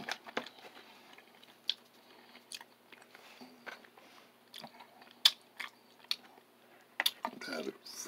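A person chewing a mouthful of chili close to the microphone: irregular wet mouth clicks and smacks, the loudest about five seconds in.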